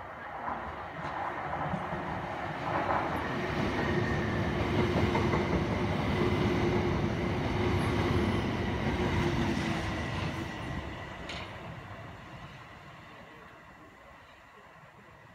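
A Class 377 Electrostar electric multiple unit running through the station without stopping. The rush of wheels on rail builds as it approaches, is loudest mid-way with a steady hum, then fades as it draws away.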